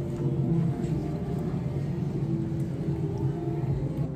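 Steady low background din of a busy indoor eating place: a constant rumble with faint, blurred voices.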